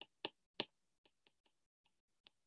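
Stylus tapping on a tablet's glass screen while handwriting: three faint sharp clicks in the first half second, then fainter, irregular ticks.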